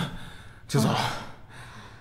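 A single short, breathy sigh from a person, about a second in.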